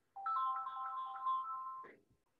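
An electronic ringtone-like melody: a few steady beeping tones sounding together with a quick pulsing, stopping just before the end.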